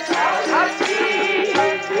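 A woman singing Sikh kirtan in a wavering, ornamented melody over held harmonium notes, with tabla strokes under it.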